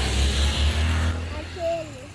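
A low rumbling noise that fades away about a second and a half in, followed by a brief voice near the end.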